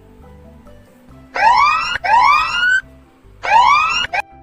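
Countdown timer's time-up alarm: three loud, rising siren-like whoops, starting about a second in, over soft background music.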